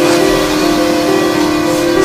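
A loud, long, steady blare: one held horn-like tone over a rushing noise, cutting off sharply just after two seconds.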